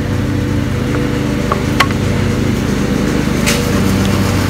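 A steady low machine drone with several constant tones runs throughout, like a motor or engine running nearby. A single sharp click comes a little before two seconds in, and a brief scraping rustle comes about three and a half seconds in as the shingles and hammer are handled.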